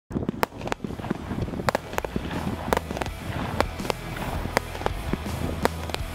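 Comet fireworks being test-fired: a string of sharp, irregular bangs and cracks, one or two strong ones a second with smaller crackles between, over a steady low rumble.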